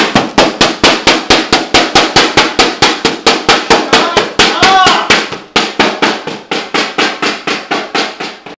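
A pair of inflatable plastic thunder sticks being banged together fast and evenly, about five loud whacks a second. A brief voice cuts in around the middle.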